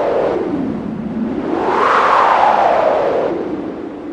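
A rushing, wind-like whoosh transition effect between two songs in a music compilation, its pitch sweeping down, rising again about two seconds in, then falling once more.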